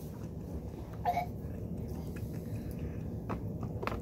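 Faint mouth noises from someone sipping and chewing, with a short vocal sound about a second in and a few small clicks near the end.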